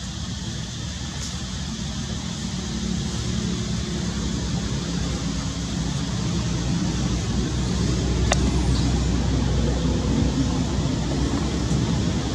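Low, steady rumble of motor-vehicle traffic that grows gradually louder, with one sharp click about eight seconds in.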